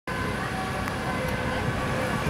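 Street traffic noise with a steady engine hum.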